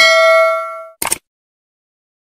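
Notification-bell sound effect: a click with a bright metallic ding that rings and fades out within about a second, followed by another short click.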